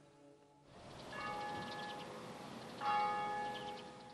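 Church tower bell, one of a pair cast in 1870, tolling: two strokes about a second and a half apart, the second louder, each ringing on and slowly fading.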